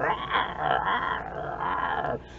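A man's breathy, strained vocal sound without words, held for about two seconds, made in the middle of a spoken story.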